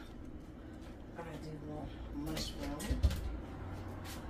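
Faint, indistinct voice sounds with a single dull, low thump about three seconds in.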